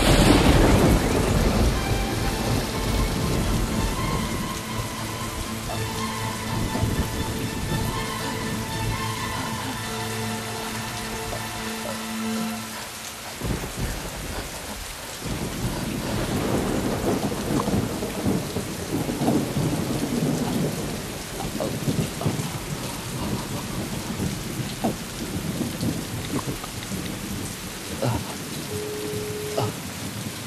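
Heavy rain pouring down on a street, with a sudden loud thunderclap right at the start that rumbles away over a few seconds.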